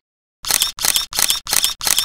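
Camera shutter firing in a rapid burst, about five clicks a second, starting about half a second in after a brief silence.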